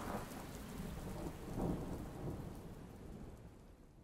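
Rain falling with low rumbling thunder, heard as a sound effect after the music of a hip-hop track stops. A louder roll of thunder comes about one and a half seconds in, and the whole thing fades out.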